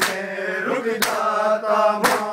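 Men's voices chanting a Shia noha in a held, mournful line, with open hands striking bare chests in unison about once a second: the rhythmic beat of matam.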